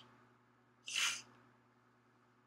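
A person's short, sharp sniff through the nose about a second in, over a faint steady low hum.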